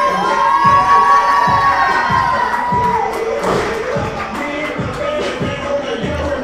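Wrestling crowd cheering and shouting over music with a steady beat, with one long high-pitched yell held for about the first three seconds.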